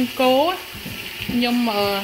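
Beef chunks sizzling in a pot as they are stir-fried and stirred with a wooden spoon. A voice is heard briefly at the start and again in the second half.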